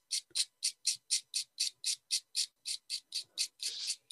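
Soft pastel stick scraped with a small blade to make pastel dust: quick, even scratching strokes, about four or five a second.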